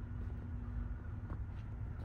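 Steady low rumble of background room noise with a faint steady hum and a few soft clicks; no speech.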